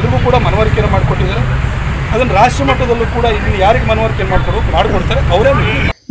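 A man's voice talking over a steady low rumble of outdoor background noise, which stops abruptly at the end.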